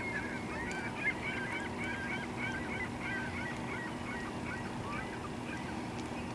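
Birds calling in a quick series of short, repeated calls that fade out near the end, over a steady low hum.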